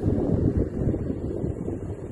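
Wind buffeting the phone's microphone, a loud, uneven rumble with no steady pitch.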